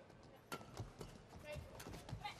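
Badminton rally on an indoor court: irregular sharp racket strikes on the shuttlecock mixed with quick footsteps and brief shoe squeaks on the court mat, starting about half a second in.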